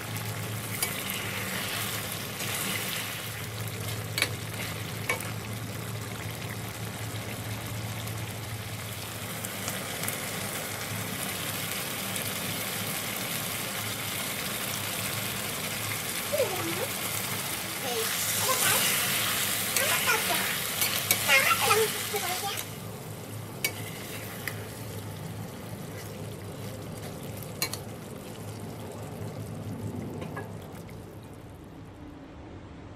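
Thick yogurt-based chicken curry bubbling and sizzling in a steel pan at a rolling boil, a steady frying hiss that grows louder for a few seconds about two-thirds of the way through, then settles quieter as the gravy reduces.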